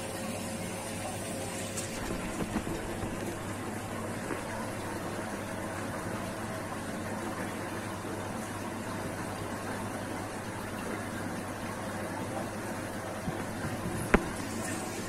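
Steady hum and running water of saltwater aquarium pumps and filtration, with a few faint clicks.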